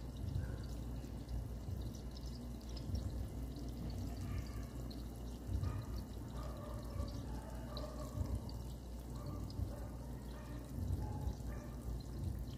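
Pork belly adobo sizzling and bubbling in its oil and sauce in a nonstick frying pan, a steady faint crackle as the fat renders out of the pork.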